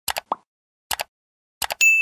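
Subscribe-button animation sound effects: three quick double mouse clicks, the first followed by a short pop, then a bright bell ding near the end that rings on.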